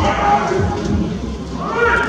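Indoor bullpen ambience with background voices. Near the end comes a short, high call that rises and then falls.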